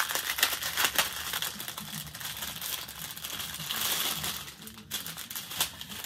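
Clear plastic packaging being handled and pulled open by hand: an irregular run of crinkling and sharp crackles.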